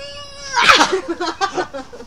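Dog whining: a long, high-pitched whine that breaks into a louder cry, followed by a run of short whimpers.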